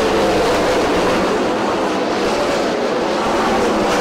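Several 410 winged sprint cars racing in a pack, their methanol-burning V8 engines running at high revs, loud and steady with overlapping pitches that waver up and down as the cars work through the turn.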